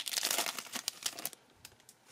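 Foil wrapper of a Yu-Gi-Oh! trading card booster pack crinkling and tearing as it is opened by hand. The crinkling stops about one and a half seconds in, followed by a few faint clicks.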